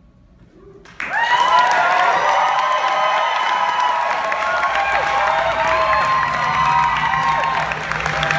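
Theatre audience bursts into applause about a second in, with whoops and cheers over steady clapping.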